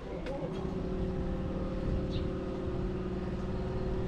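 A motor vehicle's engine idling, a steady hum with an even pitch that comes in just after the start and holds level.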